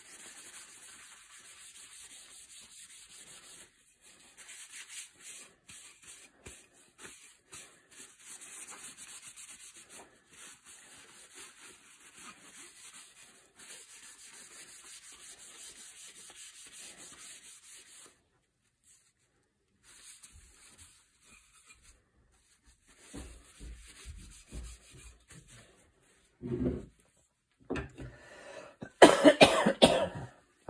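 Paper towel rubbing against the wood of a walnut shotgun stock as sticky linseed-oil residue is wiped from inside its head: a steady dry rubbing that stops about 18 seconds in. A few knocks of handling follow near the end, as the stock is laid down on the wooden table.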